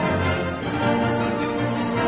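Orchestral music from an opera recording: the orchestra plays on with no singing heard.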